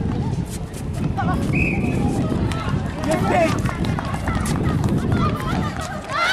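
Outdoor netball match sounds: players' shoes on the hard court and the voices of players and spectators calling out. A short whistle blast comes about one and a half seconds in.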